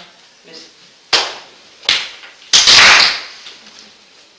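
Three sudden, loud noise bursts, much louder than the talk around them. The first two, a little over a second in and just under two seconds in, are short. The third, about two and a half seconds in, is the longest and loudest.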